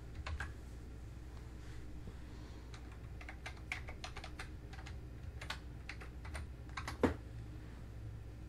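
Computer keyboard typing: faint, irregular keystrokes, with one louder key click about seven seconds in.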